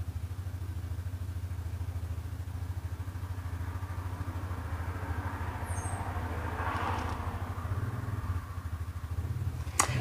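A steady low mechanical hum with a fast pulse in it. A softer, broader swell rises and fades away in the middle of it.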